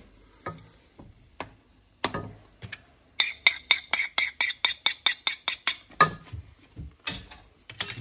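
A fast, even run of light taps, about six or seven a second for nearly three seconds, as ground spices are knocked off a plastic plate into a pot of broth. A few single knocks come before it.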